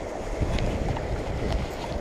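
Steady rush of a shallow river running over rocks, mixed with a low wind rumble on the microphone, with a few faint clicks.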